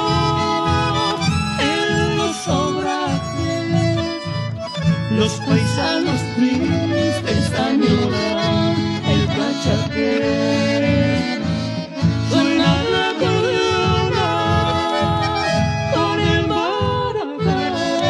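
Instrumental chamamé passage led by accordion, its sustained chords and melody running over a steady, regular bass pulse.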